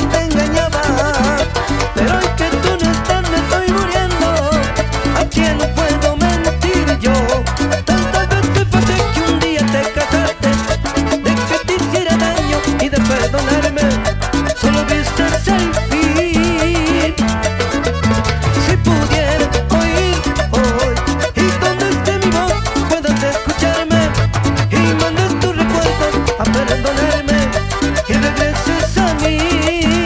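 Cumbia band music: accordion melody over guitar, congas and drums, with a steady, even dance beat.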